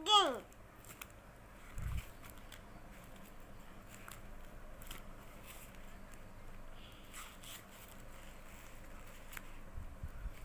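Quiet room with faint rustles and light taps of coloured paper sheets being handled and turned. It opens with the tail of a young child's high voice sliding down in pitch, and a soft low thump comes about two seconds in.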